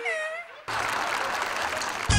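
A short wailing cry from one voice, then applause that cuts in suddenly and carries on.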